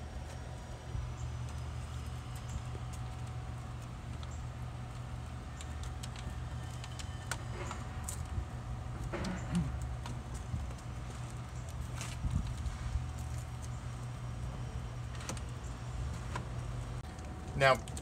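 A steady low hum with scattered light taps and clicks as a plastic slatted shutter is pressed by hand against an RV door window. The hum cuts off about a second before the end.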